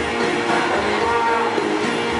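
Recorded music playing over a hall's sound system, with long held notes.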